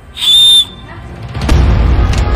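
One short, loud, high whistle note, held steady for about half a second. Around it the background music drops out, and it comes back with a low hit about a second and a half in.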